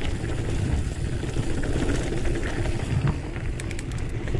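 Mountain bike rolling over a dirt singletrack: a steady low rumble of tyres and bike rattle mixed with wind on the microphone, with a few light ticks near the end.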